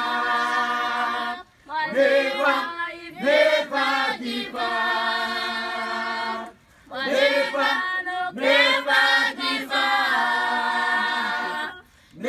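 A choir singing a slow song in long held notes, with short breaks between phrases about a second and a half in, about halfway through and just before the end.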